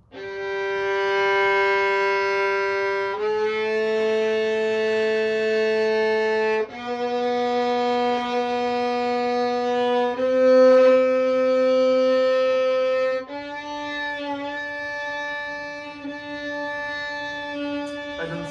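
Violin played by a beginner: five long bowed notes, about three seconds each, climbing step by step up the G string from the open G.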